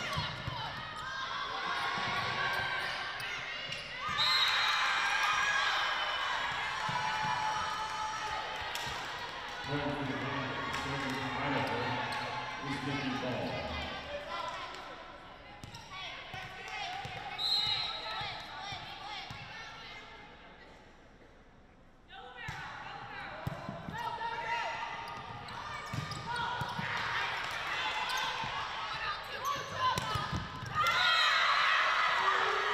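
Volleyball play on a hardwood court in a large, nearly empty gym: players shouting and calling to each other, sneakers squeaking and the ball being struck. It goes quieter for a few seconds about two-thirds of the way through, then the shouting picks up again.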